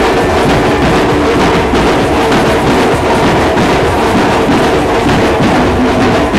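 Comparsa street band playing carnival music live: loud drums and percussion keeping a steady beat, with some held notes over the top.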